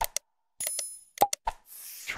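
Sound effects of a like-and-subscribe animation: two quick mouse clicks, a short bright bell ding, another run of clicks, then a whoosh that falls in pitch near the end.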